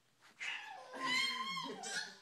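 Toddler squealing in play: a short cry, then a long high squeal that rises and falls for about a second. A woman's lower voice sounds beneath it near the end.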